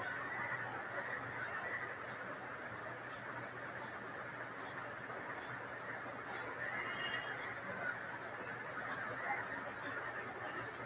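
Steady background hiss with short, high chirps repeating irregularly, roughly one or two a second.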